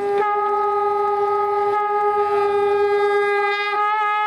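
Conch shell blown in one long held note, which wavers slightly in pitch near the end.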